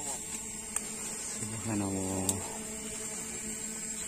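Steady high-pitched drone of insects in the grass and undergrowth. About halfway through, a man's voice holds a drawn-out, wordless vowel for about a second.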